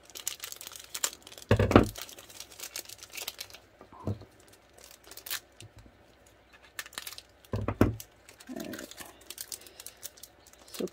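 Thin clear plastic packaging sleeves crinkling and tearing as they are cut open with scissors and a paintbrush is pulled out, a run of small crackles, with two louder handling knocks, about a second and a half in and near eight seconds.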